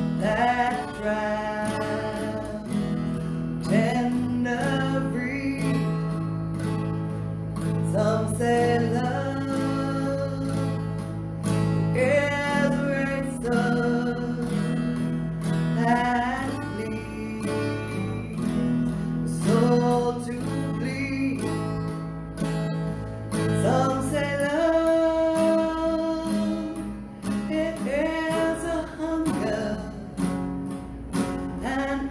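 A woman singing a slow song solo while strumming chords on a steel-string acoustic guitar, holding long notes that slide up into their pitch.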